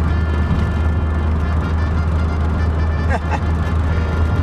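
Steady low drone of a car's engine and tyres on the road, heard from inside the cabin, with a car radio playing music faintly underneath.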